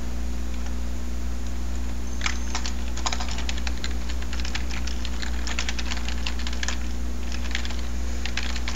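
Computer keyboard typing: runs of quick key clicks starting about two seconds in and going on in short bursts, over a steady low hum.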